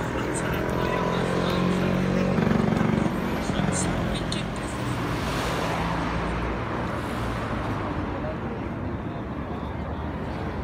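An engine running with a steady low hum, loudest two to three seconds in and fading out after about seven seconds, over the chatter of a crowd.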